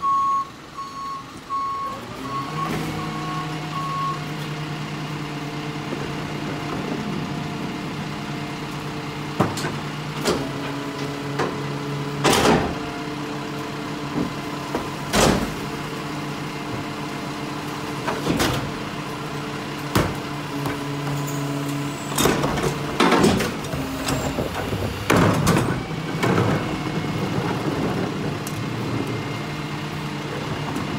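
Rear-loader garbage truck: its backup beeper sounds for the first few seconds, then the engine rises in pitch about two seconds in and holds a steady hum. Over the hum, a dozen or so sharp bangs and knocks come as cardboard boxes and a recycling cart are loaded into the hopper, the busiest stretch near the end.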